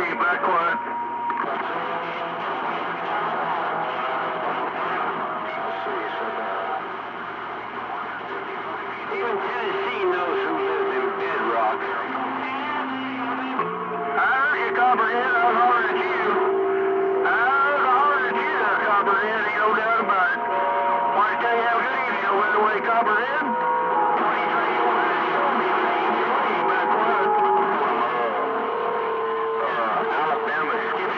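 CB radio receiving on channel 28: several garbled, unintelligible voices overlap through the set's speaker, mixed with steady whistling tones that hold for a few seconds each and then change pitch.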